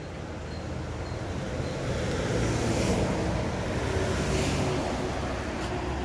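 A motor vehicle's steady rumble with a low engine hum, growing louder over the first couple of seconds and then holding.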